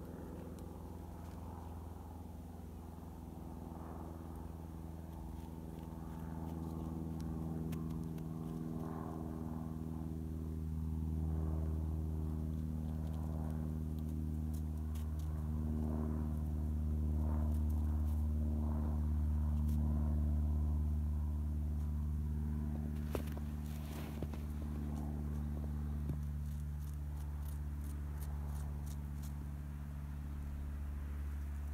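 A steady, low engine drone that swells a little midway and eases off toward the end, with a few faint clicks and crackles near the end.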